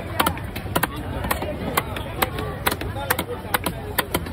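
Knife chopping a needlefish into steaks on a wooden chopping block: sharp chops at an irregular pace of about two a second.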